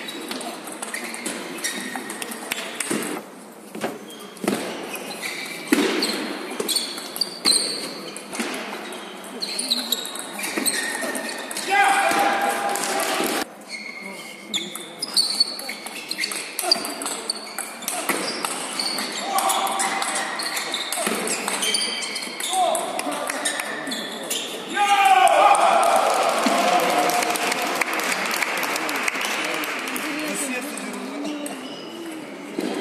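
Table tennis rallies: the ball clicking back and forth between rackets and table in quick runs of sharp ticks, echoing in a large hall. Voices talk at times, loudest near the end.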